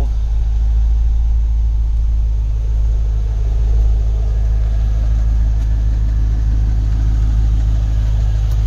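2002 Chevrolet Corvette C5's 5.7-litre V8 idling steadily, a low even rumble heard from inside the cabin.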